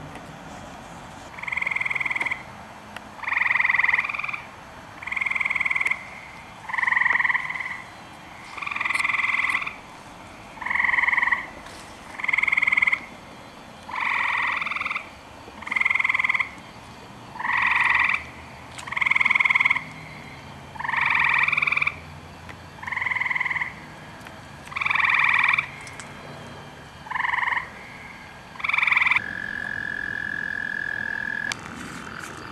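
Gray treefrog calling: short, loud, musical trills of about a second each, repeated roughly every two seconds, about sixteen in all.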